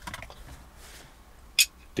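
Faint scratching and rubbing of plastic parts as a smartphone holder is handled onto a car air-vent mounting plate, with one sharp click about one and a half seconds in.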